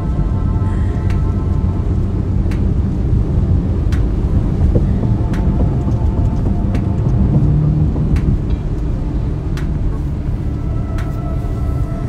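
Ferrari heard from inside the cabin while cruising on a highway: a steady low engine and road rumble.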